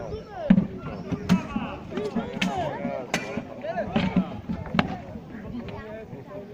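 Many voices shouting over one another, cut by sharp knocks and clashes about once a second: the sound of a staged medieval fight, weapons striking shields and each other.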